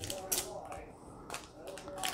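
Paper-stock trading cards clicking and flicking against each other as a stack is shuffled through by hand: several light, sharp taps at irregular intervals.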